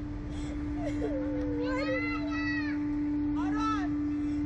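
A child whimpering twice, a long rising-and-falling whine near the middle and a shorter one near the end, over a steady mechanical hum and low rumble.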